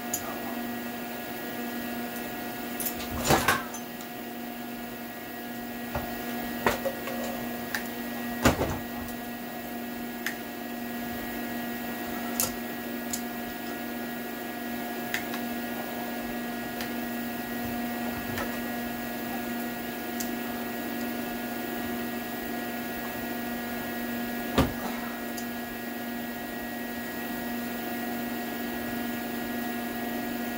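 Steady electrical machine hum, with a handful of sharp knocks and clinks of metal tools on the cylinder head, the loudest a few seconds in and another near the end.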